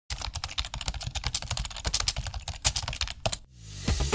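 Rapid, irregular clicking like typing on a keyboard, stopping about three and a half seconds in; music then swells in near the end.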